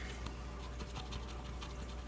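Faint scratching as a fingernail rubs the coating off a lottery scratcher ticket to uncover a letter, over a low steady hum.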